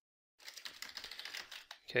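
Computer keyboard typing: a quick run of key clicks starting about half a second in, as a command is typed.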